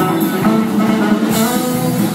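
Live band playing a rock song, with electric guitar and a drum kit keeping a steady beat.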